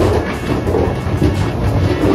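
Steady low rumble of a docking car ferry's engines, heard from inside the ship.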